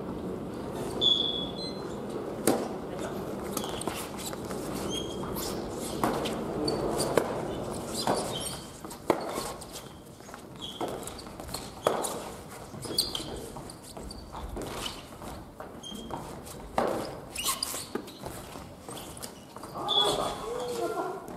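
Badminton doubles rally on a wooden gym floor: sharp racket strikes on the shuttlecock every one to three seconds, with short sneaker squeaks and footsteps between them, echoing in the hall.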